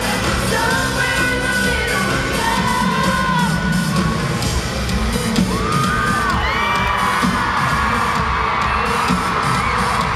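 Live pop band playing in an arena with a steady drum beat, while the crowd near the microphone screams and whoops, the screaming strongest in the second half.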